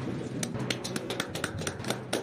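Press camera shutters clicking in a quick, irregular run of sharp clicks, several a second, starting about half a second in, as the photo-op is shot.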